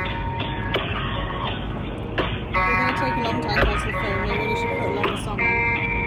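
Telephone hold music playing through a phone's speaker, thin and cut off in the treble like phone audio, while the call waits on hold. Steady road and tyre noise from the moving car runs underneath.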